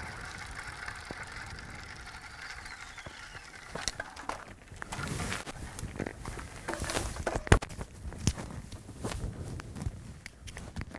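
Bicycle rolling along a gravel road, a steady rushing noise. From about four seconds in come many irregular clicks and knocks as the bike is brought to a stop and laid down on the gravel.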